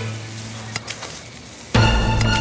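A shovel scraping and crunching into soil and dry leaves, with a few sharp scrapes near the middle. Near the end, tense background music with a low drone cuts in abruptly and covers it.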